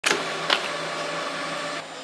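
Baggage conveyor belt at an airport check-in running with a steady mechanical hum as it carries a suitcase. The hum stops shortly before the end. Two sharp knocks come within the first half second.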